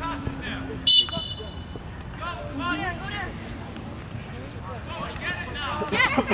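Short, sharp blast of a referee's whistle about a second in, over distant shouting from players and the sideline at a youth soccer game.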